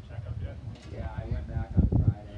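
Indistinct men's voices calling out and talking between players, with a louder low-pitched burst near the end.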